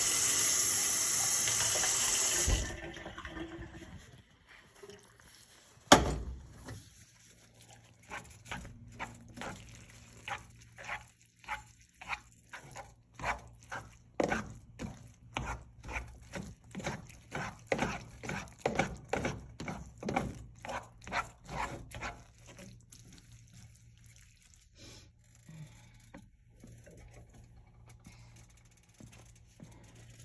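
A loud rushing noise for the first two and a half seconds, then a single sharp knock about six seconds in. After that a plastic spaghetti server stirs thick cooked lentils in a skillet, scraping the pan about twice a second for some fourteen seconds, over a low steady hum.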